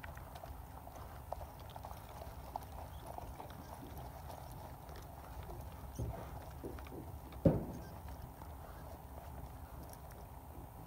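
Faint hoofbeats of a horse over turf at a distance, over a low steady rumble, with one loud thump about three quarters of the way through.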